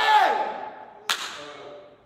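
A man's loud drawn-out exclamation echoing in a large hall, then a single sharp knock about a second in that rings briefly in the room.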